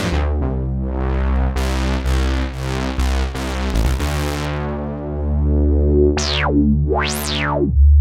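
OB-Xd software synthesizer, an Oberheim emulation, run as two instances panned hard apart and fed through a Neve-style preamp plug-in. It plays thick sustained chords over a deep bass, the "big old Oberheim fatness". Near the end, bright tones sweep up and down twice.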